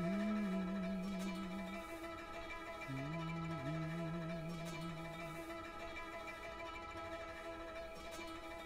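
Background music: a few long low notes that slide into pitch and hold, over a steady ringing drone of string-like tones.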